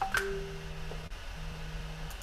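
A click followed by a short electronic chime of flat, steady tones, cut off about a second in, with a low tone sounding again soon after. It is typical of a computer alert or notification sound.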